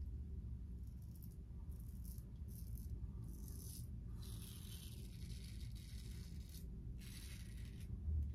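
Double-edge safety razor scraping through lathered stubble on the cheek, a faint crisp rasp coming in several short strokes with brief pauses, the longest stroke run from about four seconds in to six and a half seconds.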